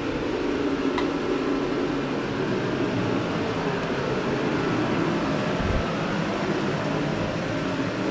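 Steady whir of a garage heater's fan, with a soft low bump a little past halfway.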